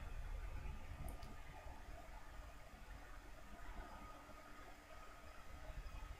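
Quiet room tone: a faint steady hiss and low hum, with a soft click about a second in.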